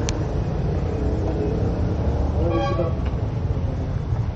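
Steady low street rumble with a short vehicle horn toot about two and a half seconds in, and two sharp clicks right at the start.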